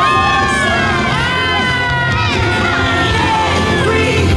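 A crowd cheering and shouting together, many high voices rising and falling at once, over loud parade music.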